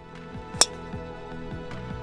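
A single sharp crack of a driver striking a teed golf ball, about half a second in, over background music.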